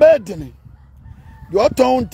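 A man's voice making two drawn-out, pitched calls without clear words, one at the very start and one near the end, with a short quiet gap between.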